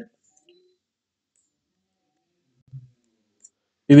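Near silence with a couple of faint clicks from typing on a computer keyboard; a man's voice comes in at the very end.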